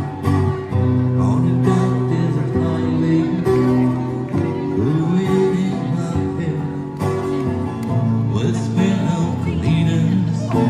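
Street busker playing an acoustic guitar through a small portable amplifier, with a man's voice singing over the guitar.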